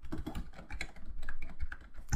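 Typing on a computer keyboard: a quick, irregular run of keystrokes as a short command is entered.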